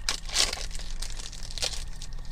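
The foil wrapper of a Pokémon booster pack crinkling as it is torn open and handled, in a run of crackly bursts, the loudest about half a second in.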